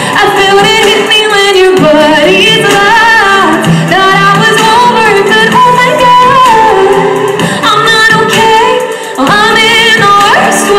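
A woman singing a pop song live into a handheld microphone over a recorded backing track, amplified through loudspeakers in a large hall.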